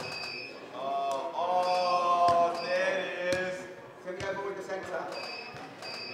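A football being kept up with the feet: sharp, irregular thuds of the ball. A voice is heard for a couple of seconds about a second in, and short high beeps sound now and then.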